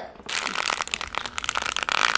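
A dense, rapid crackling and crinkling, beginning about a quarter second in.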